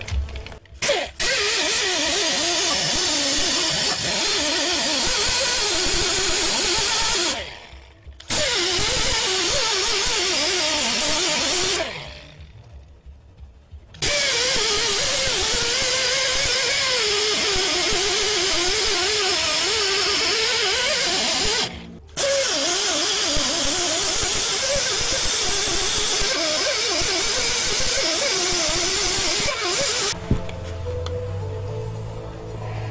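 Pneumatic die grinder spinning a yellow Roloc bristle disc against the aluminum engine block deck to clean off old gasket material, its whine wavering as the disc loads and unloads, with a hiss of exhaust air. It stops briefly about seven seconds in, for about two seconds around twelve seconds in, and briefly again around twenty-two seconds.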